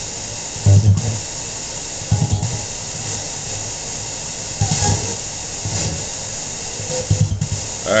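Spirit box sweeping through radio stations: a steady hiss of static broken by about five short, chopped fragments of broadcast voices and music.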